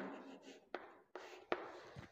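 Chalk writing on a chalkboard: a few faint, short scratching strokes and taps as figures are written.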